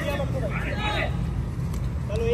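Voices calling out during roughly the first second, over a steady low background hum.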